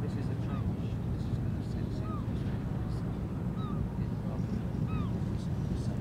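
Cruise ship's engines running with a steady low hum carried across the water, while a bird gives short chirps about every second or so.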